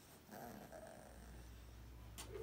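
A faint, short vocal sound from a Bullmastiff puppy about half a second in, over a low steady hum that starts about a second in.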